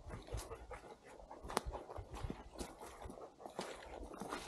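Footsteps of a hiker on a mossy forest trail, irregular steps and knocks with one sharper knock about a second and a half in, over wind rumbling on an uncovered microphone.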